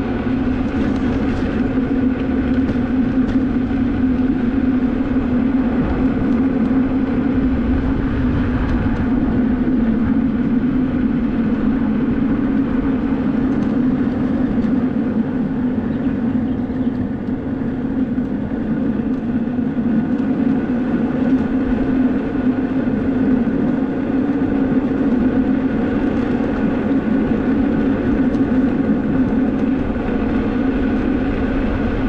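Electric unicycle riding steadily on asphalt: a constant hum from its hub motor, with rolling tyre noise and wind rumbling on the microphone.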